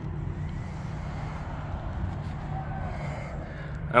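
Steady low rumble of a 2019 Dodge Challenger SRT Hellcat Redeye's Whipple-supercharged Hemi V8 idling through its Corsa exhaust.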